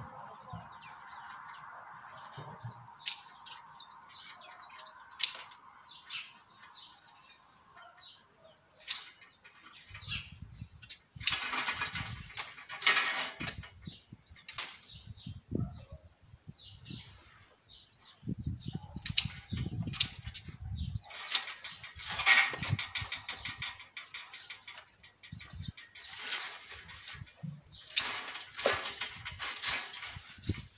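Pruning shears snipping grapevine canes: a few sharp, separate clicks. From about ten seconds in they give way to loud bursts of rustling and shuffling as the vine is worked over.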